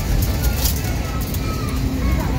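Steady low rumble of an airliner cabin: the jet engines and rushing air heard from a passenger seat. A brief rustle of handling noise comes about half a second in.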